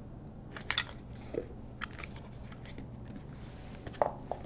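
Faint handling noise: a few light, scattered clicks and taps as a foam-jacketed air separator and brass fittings are moved about on a tabletop.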